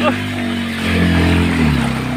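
Single-cylinder motorcycle engine running steadily at low revs while the bike wades through a shallow river.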